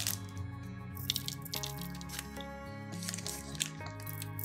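Background music with steady held notes that step from one pitch to the next, and a few light ticks over it.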